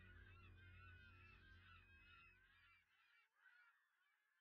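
Faint birds chirping, many short overlapping calls, over a low rumble that stops about three seconds in, leaving only the thinning chirps.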